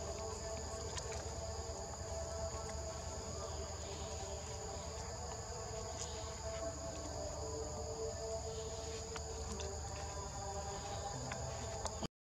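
Steady chorus of insects: continuous high-pitched trilling that holds unbroken throughout, over a lower steady hum, with a few faint clicks.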